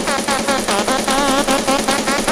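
Electronic dance music in a continuous progressive techno DJ mix: a steady, evenly pulsing beat under a wavering synth lead.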